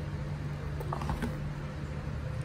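A steady low hum with a few soft clicks about a second in, as a metal fork is set down into a paper instant-noodle cup.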